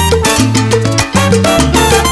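Instrumental salsa: a bass line in held notes under percussion and melodic lines, with no singing and a brief drop in loudness about a second in.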